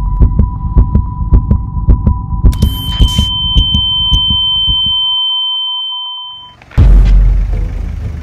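Dramatic soundtrack sound design: quick, heartbeat-like low pulses, about three a second, under a steady electronic tone, with a shrill high tone joining about two and a half seconds in. The pulses stop about five seconds in, the sound drops away almost to nothing, then a deep boom hits near the end and trails into a rumble.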